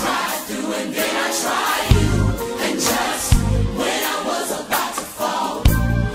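Gospel music: a group of voices singing over a band, with deep bass notes landing every second or two.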